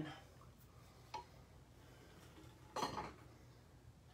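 Faint clinks and knocks of a metal water bottle being handled and set down: one short click about a second in and a louder knock near three seconds.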